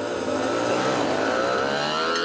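A motor vehicle's engine accelerating in street traffic, its pitch rising steadily.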